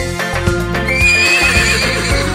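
A horse whinnying over children's background music; the whinny comes in about a second in as a high, wavering call.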